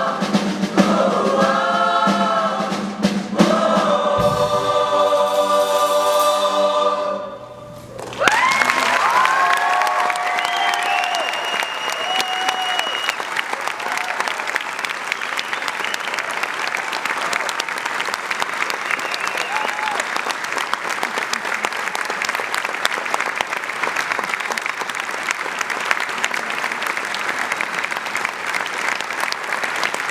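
A boys' choir sings the end of a song, the last chord held and fading out about seven seconds in. The audience then breaks into applause with whoops and cheers that carries on steadily.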